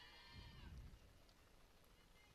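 Near silence in an open ballpark, with a faint, drawn-out distant voice calling that fades out within the first second.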